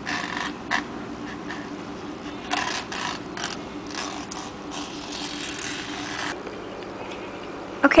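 Scissors cutting the stems off ti leaves: a run of short snips and slicing strokes through the leaf. A steady hum underneath stops about six seconds in.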